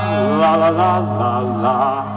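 Male lead vocalist singing live with a rock band, his voice gliding up and down over a steady held low note from the band.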